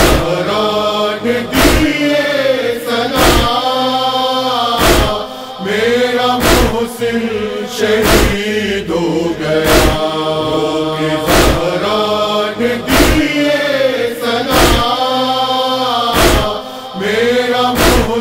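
Voices chanting a slow, wordless mourning lament in a noha, over steady chest-beating (matam) that lands about once every one and a half seconds.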